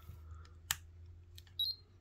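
The on switch of a Cloud Nine hair straightener clicking as it is pressed, one sharp click followed by a fainter click, then a brief high-pitched beep.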